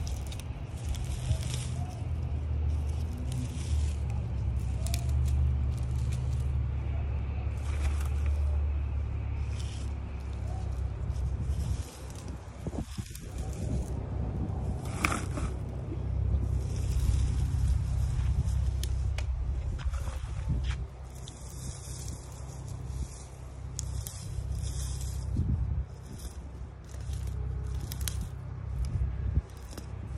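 Dry grass and weeds rustling and tearing as they are pulled out of a planter by gloved hands, in short irregular bursts. A steady low rumble runs underneath.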